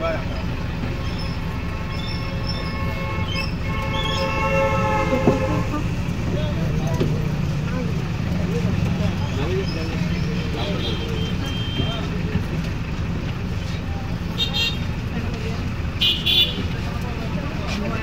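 Steady low engine and road rumble from a slow-moving vehicle in street traffic. A vehicle horn sounds for about two seconds, about four seconds in, and there are two short, high-pitched sounds near the end.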